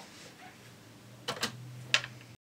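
A few sharp plastic clicks in the second half, the last the loudest, from over-ear headphones being put on and settled over the ears, over a faint low steady hum.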